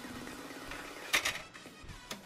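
Plastic ink cassette of a Canon Selphy CP1300 photo printer being pushed into its slot, with a sharp click a little over a second in as it snaps into place.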